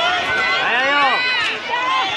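Spectators shouting and yelling, many voices overlapping at once.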